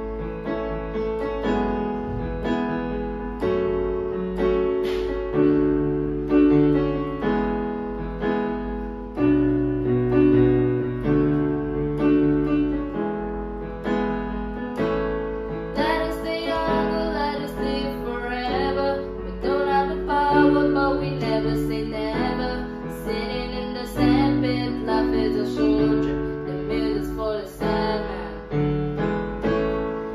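Electronic keyboard in a piano voice playing slow, repeated chords over a stepping bass line. About halfway in, the sound grows fuller and busier.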